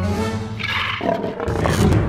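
Cartoon sound effect of the shark roaring twice, in two loud growling bursts, over background music.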